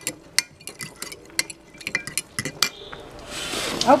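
Metal fork stirring a thick peanut-butter sauce mix in a glass measuring cup, clinking sharply and irregularly against the glass. About three seconds in the clinking stops and a rising hiss takes over.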